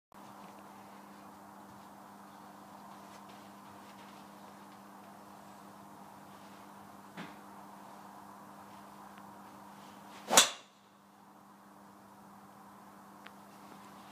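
TaylorMade R11 titanium driver striking a teed golf ball once, a single sharp crack about ten seconds in, over a steady low hum. A faint click comes a few seconds before the strike.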